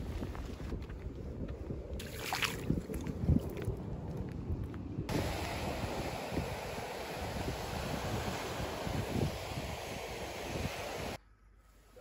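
Wind on the microphone with a rough low rumble, then from about halfway a steady hiss of surf washing onto a shingle beach; the sound cuts off suddenly near the end.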